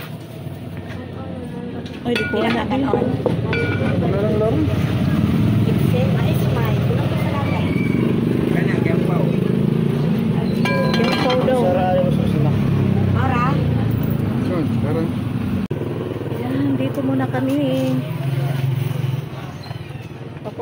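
Street noise of engines and indistinct voices, with a few ringing metal clinks from an aluminium cooking pot in the first seconds. Near the end a motorcycle engine runs with a steady hum.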